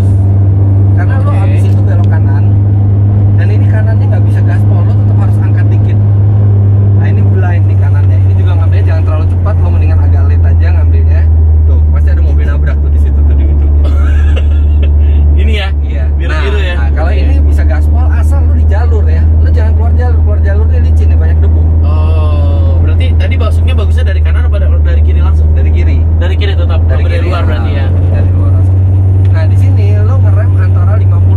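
A car's engine drones steadily inside the cabin as it is driven round the track. Its low note settles a little lower about eight seconds in.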